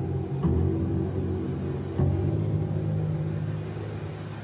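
Low, sustained bass notes from a guitar synthesizer, sounding like a deep bowed-string drone. A new note comes in about half a second in and another at two seconds, then the sound slowly fades.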